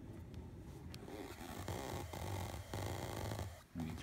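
Steady, fluttering background noise over a low hum from a digital Rotator (rotary-speaker) effect with no signal running through it: unwanted noise the effect makes even when not in use.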